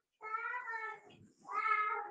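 Two drawn-out high-pitched vocal calls, fainter than the teacher's speech: the first lasts most of a second, the second is shorter, about a second later.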